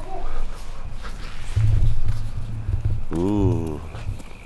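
Footsteps walking on pavement over a low rumble on the microphone, with a short wavering voice sound a little after three seconds in.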